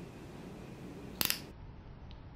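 A quick cluster of a few sharp metallic clicks about a second in, typical of steel surgical instruments such as hemostats being handled and clinking. Otherwise faint room noise.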